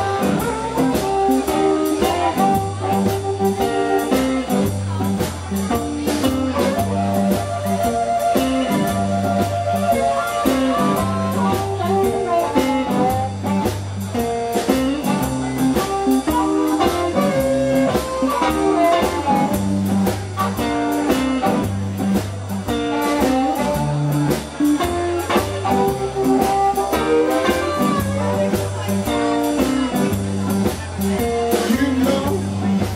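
Live electric blues band playing: a Fender Telecaster electric guitar plays lead lines over bass guitar and drum kit. A blues harmonica is played into the vocal microphone.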